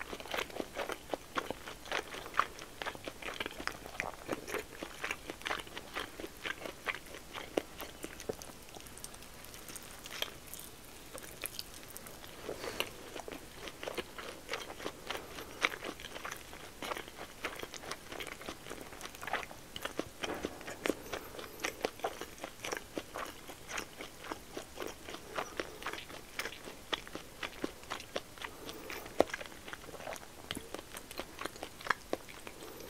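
Close-miked chewing of a nikumaki onigiri, a rice ball wrapped in pork belly: a steady run of small mouth clicks and smacks, thinning briefly about a third of the way in.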